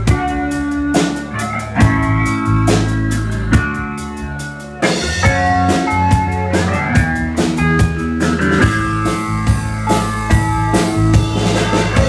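Live band playing an instrumental psychedelic funk-pop passage on drum kit, electric bass and electric guitar, with a steady drum beat under held bass notes. The band eases off about four seconds in, then comes back in fuller just before five seconds.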